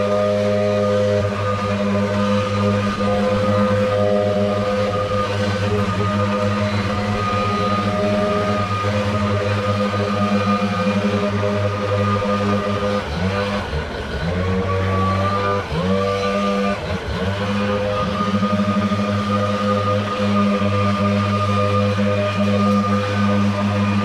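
Gas backpack leaf blowers running near full throttle with a steady engine drone and air rush. A little past halfway the engine pitch dips and climbs back a couple of times as the throttle is eased and reopened.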